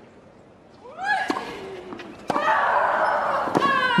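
Tennis players grunting as they strike the ball: a short rising shriek with a sharp racquet hit about a second in, then a longer, louder shriek a little past halfway, with more ball strikes.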